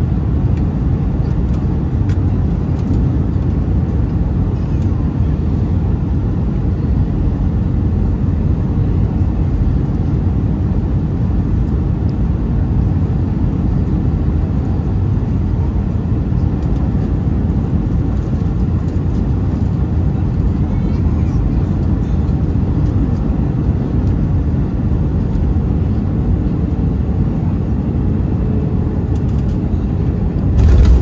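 Airbus A319 cabin noise on short final approach, heard from a window seat beside the wing: a steady low rumble of the engines and rushing air.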